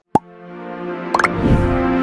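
Television channel's closing music sting: a sharp click, then a swelling sustained chord with a quick rising run of notes and a deep low swell about one and a half seconds in.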